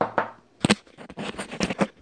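Small objects being handled on a tabletop, with a small glass jar among them: one knock at the start, then a quick run of sharp clicks and knocks in the second half.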